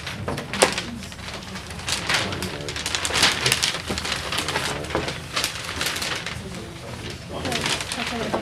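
Indistinct, low voices talking in a small meeting room, with paper rustling and handling sounds and a sharp click about half a second in.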